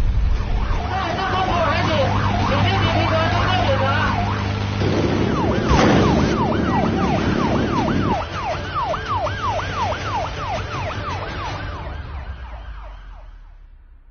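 Electronic siren of a coast guard patrol vessel: first a fast warble, then a quick rising-and-falling yelp at about two sweeps a second, over a steady engine drone. A sudden burst of noise comes about six seconds in, and the siren fades out near the end.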